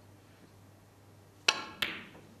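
Snooker cue tip striking the cue ball with a sharp click about a second and a half in. A second click follows a third of a second later, as the cue ball strikes an object ball.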